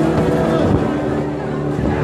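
Marching band brass holding sustained notes, partly covered by a low rumble from the microphone being moved about.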